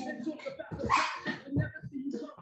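Grunts and hard breathing from two wrestlers straining against each other on the mat, loudest about halfway through.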